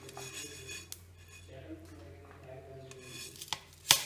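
Fennel seeds being stirred and scraped in a metal pan, with light scraping and a few small clinks. Near the end comes one sharp, loud metal clank as the pan is tipped onto a steel plate.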